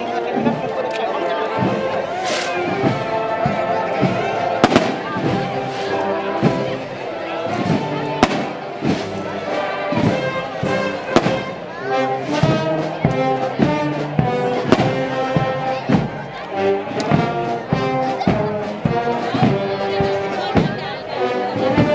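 Brass band playing a processional march, with many sharp percussive bangs cutting through the music.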